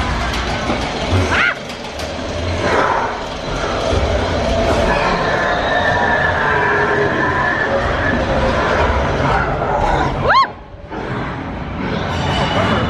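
Matterhorn Bobsleds coaster car running along its track: a steady rumble and rattle, with a short rising shriek about a second in and another near the end.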